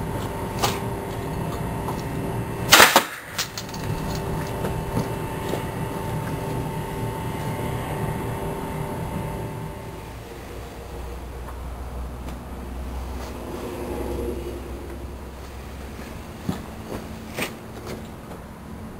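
A homemade compressed-air gun firing at 25 PSI: one sharp blast about three seconds in, as the air is released and the metal USB drive strikes the wooden target. A steady background hum runs under it, and there is a smaller sharp click near the end.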